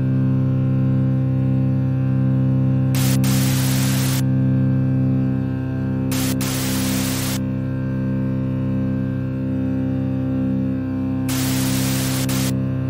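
A low, steady drone from the trailer's score, broken three times by about a second of loud static hiss: about three seconds in, about six seconds in and near the end, as the title text glitches.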